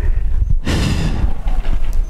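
Wind buffeting the microphone with a steady low rumble, and a rush of breathy noise a little over half a second in that fades within about half a second.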